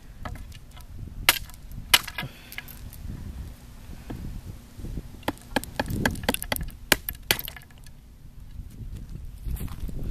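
Thin ice on swimming-pool water being jabbed and broken with a wooden stick: sharp cracks and glassy clinks of breaking ice. There are two loud cracks early on, a quick run of them a little past halfway, and a few more near the end.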